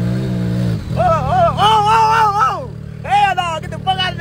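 Side-by-side UTV engine running at a low, steady drone as the machine wades slowly through deep water, with people shouting and hollering over it.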